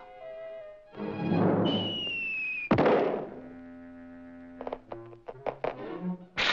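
Cartoon sound effects over orchestral score: a rushing dive with a slowly falling whistle, ending in a loud crash into the ground nearly three seconds in. A quick run of short knocks follows near the end.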